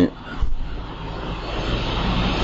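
Steady rushing noise of road traffic, swelling slightly after about half a second, with a short low thump about half a second in.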